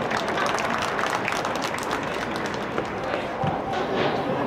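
Footballers shouting and calling on the pitch, with frequent short knocks, echoing in a large inflatable dome hall.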